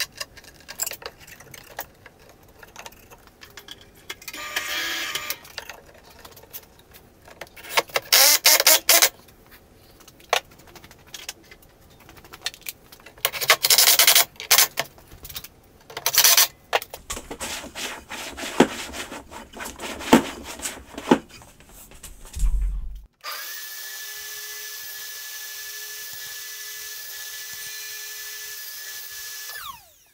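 Wooden knocks and clatter as sled parts are handled, broken by a few short runs of a cordless drill driving screws, around 4, 8 and 14 seconds in. About 23 seconds in, a steady hum with a clear tone starts suddenly and runs until just before the end.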